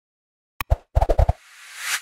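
Sound effects of an animated subscribe end screen: a sharp mouse click, a quick run of about five low pops as the buttons toggle, then a rising whoosh that stops abruptly.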